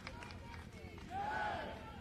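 A pause in an amplified open-air speech: low outdoor background with the public-address echo dying away, and a faint voice rising and falling about halfway through.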